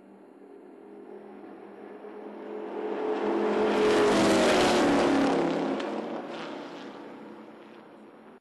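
Two race cars passing at speed, their engine sound building as they approach, loudest about four seconds in, then dropping in pitch and fading as they pull away.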